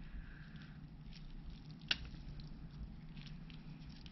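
Faint crackling and small clicks of hands handling and breaking apart a bare corn cob eaten down by compost worms, with one sharper crack about two seconds in.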